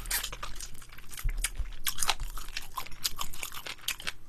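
Close-miked chewing of Korean yangnyeom (sweet-spicy sauced) fried chicken: a rapid, irregular run of small crunches and wet chews as the coated crust is bitten and chewed.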